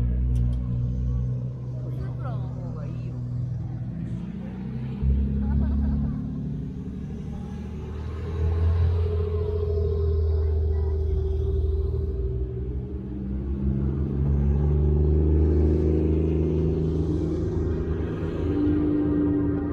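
Car engine running at low revs as a modified Mk4 Toyota Supra rolls slowly past: a deep, steady engine note that swells and eases a few times.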